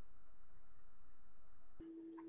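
Faint steady electronic tones and hiss in a video-call audio line, broken off by a click near the end, after which a lower steady tone starts.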